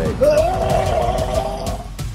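A man's voice giving one long strained cry, lasting about a second and a half and held at a steady pitch after a short upward glide at its start, with background music under it.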